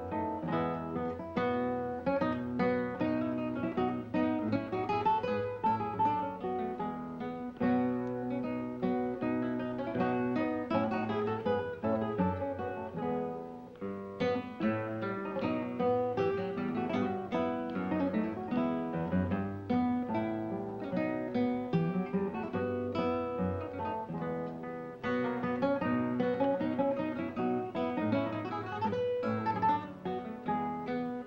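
Solo classical guitar played fingerstyle: a quick, continuous flow of plucked notes. The playing eases briefly about thirteen seconds in, then picks up again.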